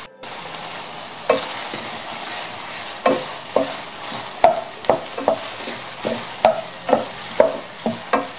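Minced chicken and meatballs sizzling in oil in a nonstick pan, with a steady hiss. From about three seconds in, a wooden spatula stirs them, scraping and knocking against the pan about twice a second.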